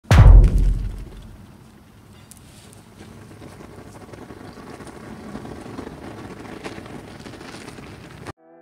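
A heavy boom right at the start that dies away over about a second, then the steady rushing noise of a fired homemade metal-melting furnace burning hard.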